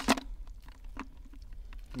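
Crayfish being dropped one at a time into a plastic bottle. There is a sharp tap just after the start and a lighter one about a second in, over a faint low rumble.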